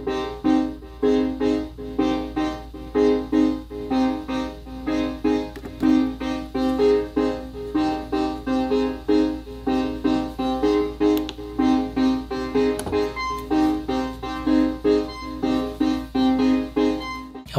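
Sequential Prophet-6 analog polysynth playing a sequenced chord pattern from the Novation SL MkIII's sequencer: short keys-like chords repeating at about two a second, with the chords changing as the pattern runs.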